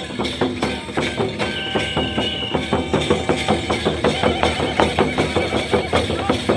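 Live drumming for a Santhal dance: a fast, even beat of about three to four strokes a second, with a high held note about a second and a half in.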